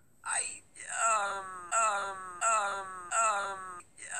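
A cartoon character's voice wailing, the same falling-pitch wail repeated about four times in quick succession, like a looped clip.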